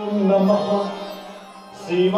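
Devotional chanting with music over a steady low drone note. The sung phrase trails off through the middle, a short hiss follows, and the singing picks up again at the very end.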